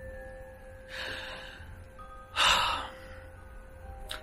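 A person breathing between sentences: a soft breath in about a second in, then a louder breath out through the nose or mouth a little past halfway, over quiet background music.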